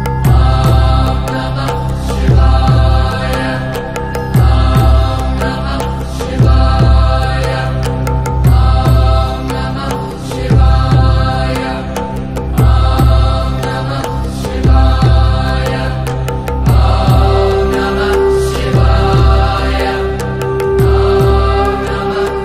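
Devotional mantra chanting over music with a deep steady drone, the chanted phrase repeating about every two seconds. A held steady note joins near the end.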